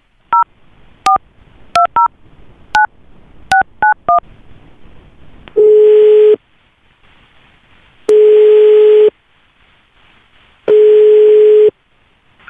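Telephone being dialled: about eight short touch-tone keypad beeps over the first four seconds, then the ringback tone, a steady beep sounding three times, each about a second long and about two and a half seconds apart, while the call rings.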